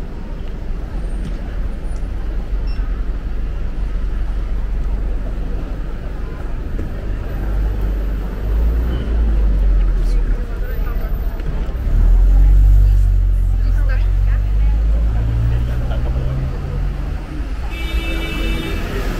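Busy street ambience: a steady rumble of road traffic and vehicle engines with passers-by talking. A nearby engine hum swells about twelve seconds in, the loudest part, then fades over the next few seconds.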